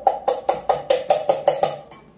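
A metal kitchen utensil knocking rapidly and evenly on metal cookware, about five knocks a second, each with a short ring; the knocking stops near the end.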